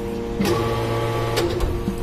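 Metal-chip briquetting press running with a steady hum, with a sharp clank about half a second in and another about a second and a half in as the machine cycles and pushes out the pressed briquettes.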